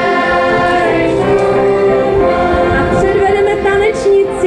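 Girls' choir of a children's folk ensemble singing a folk song together on stage microphones, with a folk band of violins accompanying.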